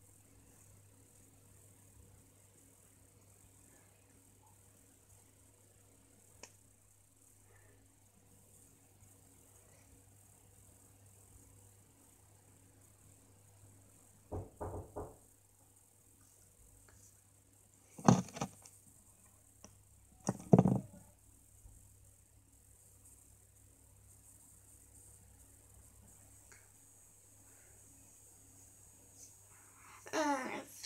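Quiet room tone with a faint steady hum, broken by knocks: a short quick cluster about halfway through, then two loud single knocks about two and a half seconds apart.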